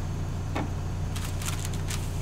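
Paper and plastic supply packaging being handled, with a single tap about half a second in and a quick run of crinkles and clicks in the second half, over a steady low hum.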